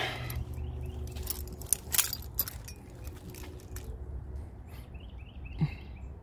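A Mercury Grand Marquis door being opened: scattered light clicks and handling noises, the sharpest click about two seconds in, over a low steady background rumble.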